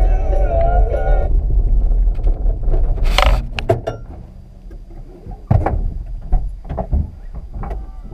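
Music stops about a second in, leaving a low rumble and a short loud hiss-like burst about three seconds in, followed by a series of sharp knocks and thunks, like gear or doors being handled inside a vehicle.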